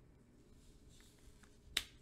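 Faint handling of a trading card being laid down on a cloth playmat, with one sharp click near the end.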